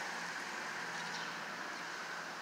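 Steady outdoor background noise: an even hiss with a faint constant hum and no distinct events.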